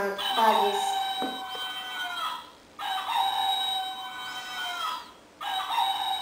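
A toy rooster's recorded crowing, played three times in a row; each crow lasts about two seconds, with a short gap between crows.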